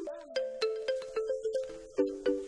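Background film music: a quick run of plucked notes, about four a second, each struck sharply and fading fast.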